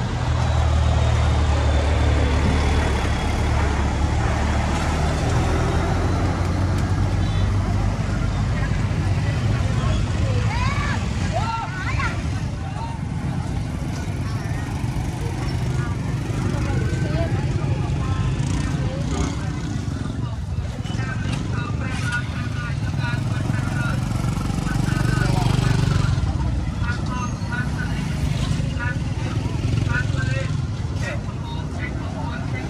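Street traffic: motorbike and vehicle engines running close by with a low rumble, heaviest for the first several seconds and again later, under people talking.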